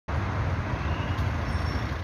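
Road traffic: an approaching motor vehicle's engine and tyre noise on the street, a steady sound with a low rumble.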